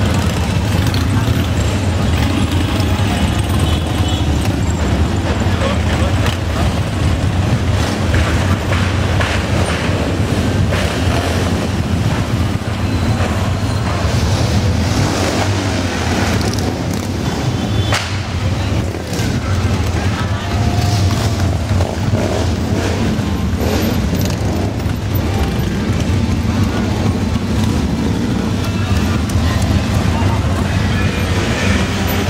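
A long procession of motorcycles, mostly Harley-Davidson V-twins, passing at low speed in a continuous loud, deep engine rumble, with voices and music mixed in.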